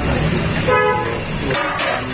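A vehicle horn gives a brief toot about three-quarters of a second in, over a steady low rumble of traffic.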